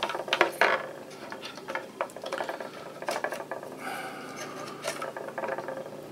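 Memory modules being pulled out of a desktop motherboard's DIMM slots: plastic retention latches clicking and the sticks rubbing and scraping as they are handled. There are a few sharp clicks in the first second, then smaller clicks and scraping.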